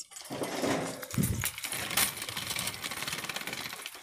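Shopping cart rattling as it is pushed along the store floor: a dense, uneven run of small metallic clicks and knocks, with a dull thump about a second in.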